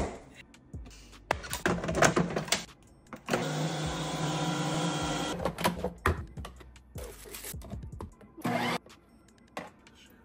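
Ninja Creami ice cream maker running: a steady motor hum for about two seconds in the middle, with a shorter burst of the motor near the end. Before it come scattered clicks and knocks as the plastic bowl and lid are handled.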